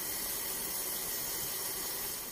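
Kitchen faucet running in a thin steady stream, the water splashing over a mushroom being rinsed by hand in a stainless steel sink.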